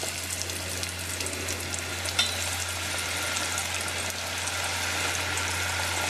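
Crumbed squid rings (calamari) deep-frying in hot oil in a stainless steel saucepan: a steady crackling sizzle, with a single sharp click about two seconds in.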